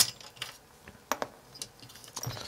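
A handful of light, sharp clicks and taps as the toroidal inductor is handled and fitted back onto the induction heater's circuit board.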